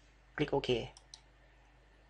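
Computer mouse button clicked: two quick, light ticks close together about a second in.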